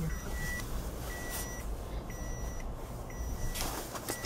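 A car's electronic warning beep sounds about once a second, each beep about half a second long, over the low rumble of the car's engine heard from inside the cabin.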